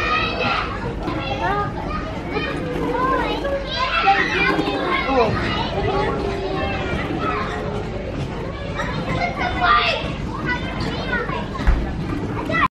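Many children's voices chattering and calling out over one another, the steady din of children playing in a soft-play area, with a short thump near the end.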